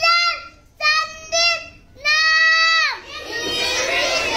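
A young boy reciting a lesson in a drawn-out sing-song voice, in three long held syllables, the last held nearly a second. Near the end many children's voices break out together.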